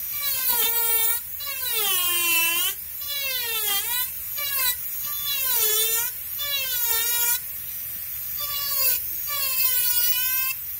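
High-speed micromotor rotary carving tool whining as its burr cuts wood, with a hiss of cutting. The pitch sags each time the burr is pushed into the wood and climbs back as the load eases, over and over.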